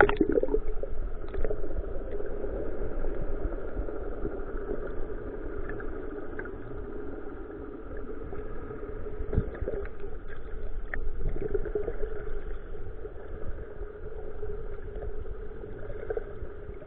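Muffled underwater sound picked up by a submerged camera: a steady hum over water noise, with a few faint clicks, after the tail of a splash at the very start.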